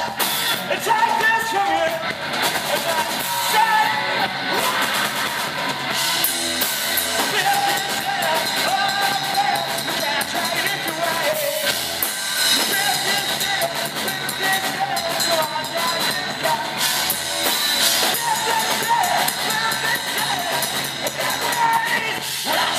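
A three-piece alternative/grunge rock band playing live: electric guitar, bass guitar and drum kit, with singing over it, loud and without a break.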